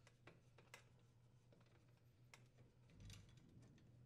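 Near silence: a low room hum with a few faint, scattered light clicks of metal parts being handled as the burner tube and its brass nut fitting are worked loose from the valve.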